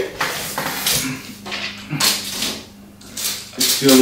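Steel tape measure being pulled out and held against the ceiling, giving a few short scrapes and clicks of the blade and case.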